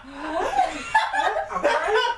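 A small group of people laughing together, with a few voiced sounds mixed in.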